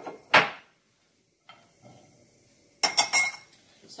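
Pots, pans and a utensil handled on a gas hob: one loud knock shortly after the start, then a quick burst of metallic clinks and clatter near the end.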